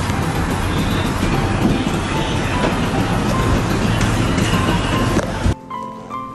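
Steady, loud rumbling background noise with faint music in it, cut off suddenly about five and a half seconds in; soft piano music follows.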